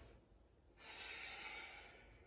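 A woman's long audible exhale through the nose, starting a little under a second in and lasting just over a second, as she lowers out of a reverse tabletop.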